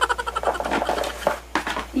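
A woman's excited giggling in quick short pulses, mixed with the rustle of cardboard boxes being handled.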